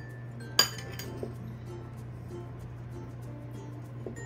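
A single sharp clink of a metal utensil against a ceramic bowl about half a second in, followed by a fainter tap, over soft background music.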